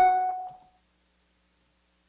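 A single short chime-like tone that fades away within about a second, followed by silence.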